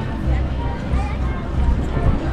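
Walking with a pushed stroller over paving: low thumps about twice a second in a walking rhythm, under distant crowd chatter.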